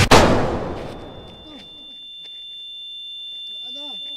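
A sudden loud crash, a car hitting a person, dying away over about a second and a half. It is followed by a steady high-pitched ringing, like ringing ears, that slowly grows louder, with a faint voice calling near the end.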